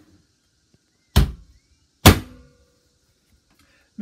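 A boat's cockpit locker hatch cover being shut over the gas-bottle compartment: two loud thunks about a second apart, the second leaving a brief ringing tone.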